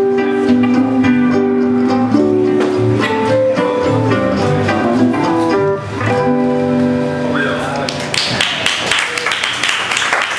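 A small string band of electric ukulele, steel guitar, guitar and washtub bass playing a twangy instrumental with long held notes. The tune ends about seven seconds in, and applause follows.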